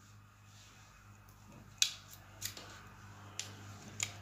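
Small sharp metallic clicks from a small transformer's sheet-metal cover and its tabs being pried and bent open by hand, a few clicks roughly a second apart, the loudest about two seconds in.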